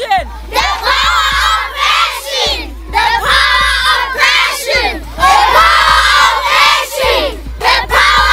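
A large group of children shouting and cheering together in loud bursts about every two seconds, with short breaks between.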